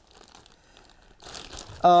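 Clear plastic bag crinkling as a disc is unwrapped from it: faint at first, then a louder rustle in the second half.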